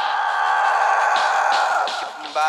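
A loud, rough held vocal, close to a scream, sung over a rock karaoke backing track; it eases off near the end.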